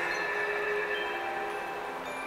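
Twinkling chime-like notes from an illumination show's soundtrack over loudspeakers: single held tones at different pitches, one after another, over a steady hiss.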